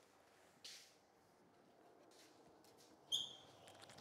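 Near silence: room tone, with a faint rustle about two-thirds of a second in and a brief high squeak a little after three seconds.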